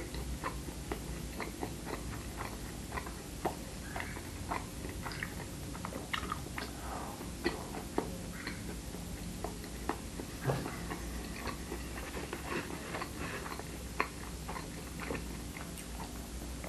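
A person chewing a soft muffin close to the microphone: many small wet mouth clicks and smacks at irregular intervals, over a low steady hum.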